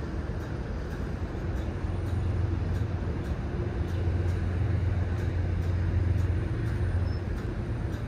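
R188 subway train moving slowly on an elevated track, with a steady low hum of its motors and equipment that swells a little in the middle. Faint regular clicks come about twice a second.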